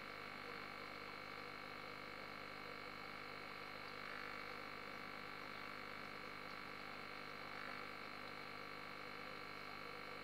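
Aquarium pump humming steadily and faintly, a constant electrical buzz made of several fixed tones.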